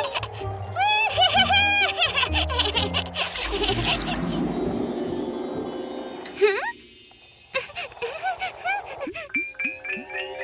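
Cartoon soundtrack: children's music with babies' squeals and giggles in the first couple of seconds, a whooshing stretch in the middle with a quick rising swoop, and a sparkly magical shimmer starting near the end.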